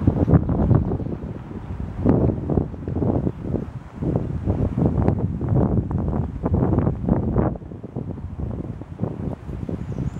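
Wind buffeting the microphone in uneven gusts, a loud low rumble that swells and drops.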